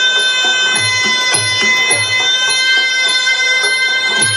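Traditional Muay Thai ring music (sarama): a long, held reedy wind-instrument note over a steady low drum beat of about two strikes a second, with light cymbal-like clinks. This is the music that accompanies the fighters' pre-bout ritual dance.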